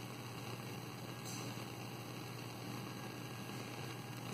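Faint steady background hiss with a low hum: room tone, with no distinct event.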